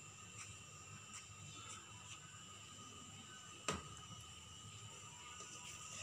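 Faint handling sounds as gram flour is pushed off a plate with a knife into a bowl of chopped onions, with one sharp tap about two-thirds of the way through. A faint steady background tone runs underneath.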